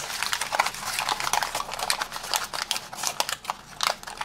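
Folded paper origami tessellation crinkling and crackling as it is squeezed and pushed together by hand, a dense run of quick irregular paper clicks.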